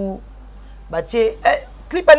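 Speech only: a woman's voice in short, broken fragments with a pause of under a second near the start.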